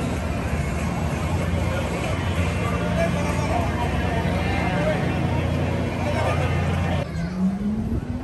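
Outdoor crowd chatter over a steady low machine hum. The hum stops abruptly near the end and a rising whine begins.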